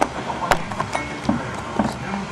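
Handling noise: a few light clicks and knocks spread across two seconds, as a camera is worked in close around an aircraft wheel's brake caliper and rotor.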